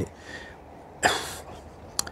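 A man coughs once, a short burst about a second in.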